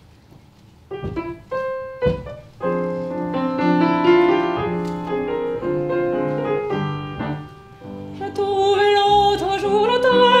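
Upright piano introduction with double bass: two separate chords, then steady accompaniment. A woman's singing voice with vibrato comes in about eight seconds in.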